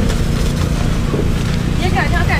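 Open-air market background: faint voices talking over a steady low rumble and hum.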